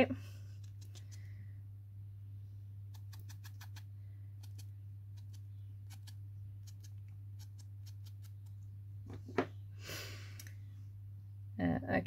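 Light, quick tapping of a handheld ink blending tool dabbed around the edge of a small paper disc, a dozen or so soft clicks, then two firmer taps and a brief rustle of paper near the end. A steady low hum lies underneath throughout.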